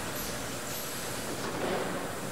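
Steady factory machinery noise: an even, continuous mechanical hum and hiss with no distinct knocks or tones.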